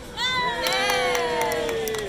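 Several voices cheering in one drawn-out whoop that slides slowly down in pitch, with a few sharp claps mixed in.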